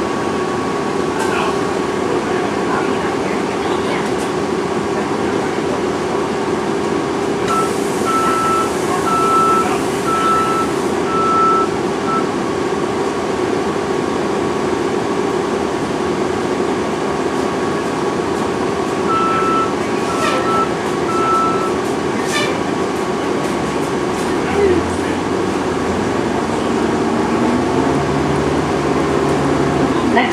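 Steady hum and drone inside a TTC transit vehicle stopped in traffic, with a reversing alarm beeping about once a second, five beeps and then, some ten seconds later, three more. In the last few seconds the vehicle pulls away, its motor note rising in steps.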